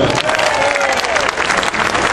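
Stadium crowd applauding: many hands clapping in a dense, steady patter that answers a player's name just called over the public-address system.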